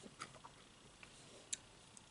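Near silence with a few faint, sharp clicks while a man eats by hand, picking food off a plate; the sharpest click comes about one and a half seconds in.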